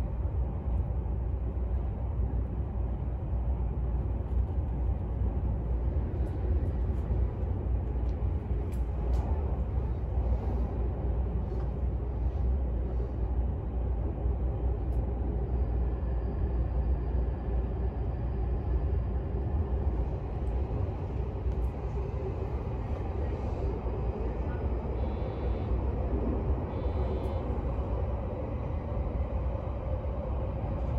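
Odakyu 60000-series MSE Romancecar running through a subway tunnel, heard inside the passenger cabin: a steady low rumble of wheels and running gear. Faint high whining tones come and go in the second half.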